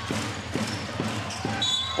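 A basketball being dribbled on a hardwood court, repeated thuds a few times a second, over the steady hubbub of an arena crowd.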